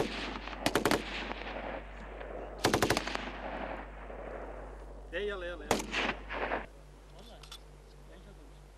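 Several short bursts of automatic weapons fire, each trailing off in an echo. The longest burst comes about three seconds in, and the firing stops about six and a half seconds in.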